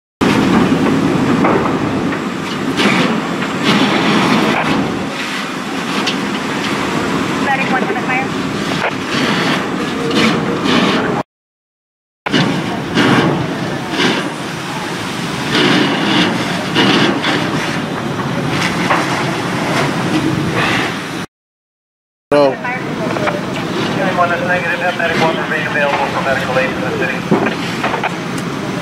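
Fireground noise: fire engines running under a steady hiss of hose streams, with indistinct voices at times. It comes in three stretches cut off by two short silent gaps.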